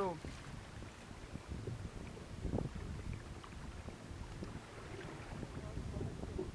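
Wind buffeting the microphone and water sloshing against a sea kayak's hull as it moves through choppy water, with small splashes and a brief knock about two and a half seconds in.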